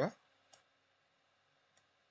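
Two faint computer mouse clicks about a second apart, over low room hiss.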